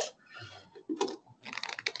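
Typing on a laptop keyboard: a few key clicks about a second in, then a quicker run of clicks near the end.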